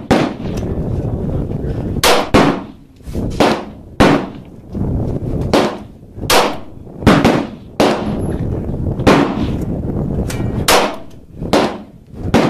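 Sarsilmaz SAR9 METE 9mm semi-automatic pistol firing about a dozen single shots at an uneven pace, roughly one a second. Each shot is a sharp crack with a short echo.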